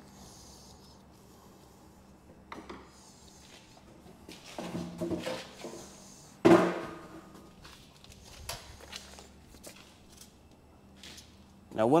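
Mostly quiet room tone with scattered handling noises, and one sharp knock with a short ring about six and a half seconds in.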